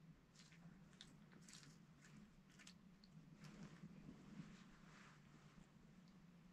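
Near silence: faint room tone with scattered small clicks and rustles.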